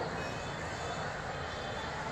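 Steady din of city traffic with a low engine hum, and a faint high beeping tone about a quarter of a second in.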